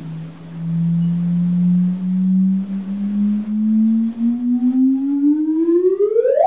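Sonified gravitational-wave signal GW170817 from two merging neutron stars. A single tone rises slowly in pitch, then sweeps up faster and higher near the end. This is the chirp of the stars' final inspiral before they merge.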